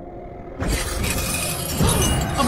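Soundtrack sound effect: a low rumble, then about half a second in a loud, sustained shattering crash with deep rumble beneath it.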